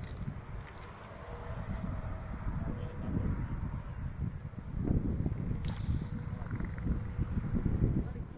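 Wind buffeting the camera's microphone: an uneven low rumble throughout, with a brief crackle of handling noise about two-thirds of the way through.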